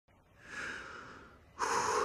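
A man breathing audibly in two breaths: a softer one fading away, then a sharper, louder one about one and a half seconds in.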